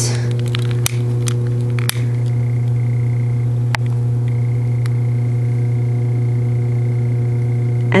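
A steady low hum with a ladder of evenly spaced overtones, unchanging throughout, with a faint thin high whine in the middle and a few sharp clicks about one, two and nearly four seconds in.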